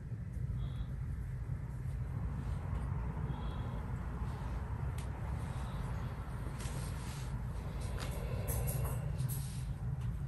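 Steady low background hum, with faint light rustles and taps from the brush work, more of them in the second half.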